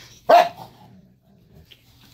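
A single short, sharp bark from a Cane Corso about a third of a second in.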